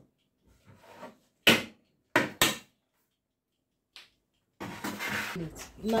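Three short, sharp knocks and clatter from an oven door and baking tray being handled, then a steady hiss near the end.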